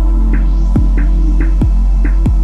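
Hip-hop beat with no vocals: a deep, held bass note under kick drums that drop in pitch, with short higher percussion hits.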